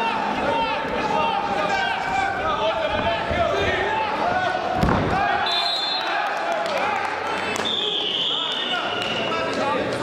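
A heavy thud, bodies slamming onto a wrestling mat, about five seconds in, over constant shouting from coaches and spectators in a large hall. Near the end a referee's whistle blows for about two seconds.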